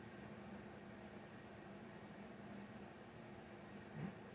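Near silence: a faint, steady hiss of room tone.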